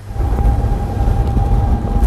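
A small motorboat's engine running: a loud low rumble with a steady whine above it, starting abruptly.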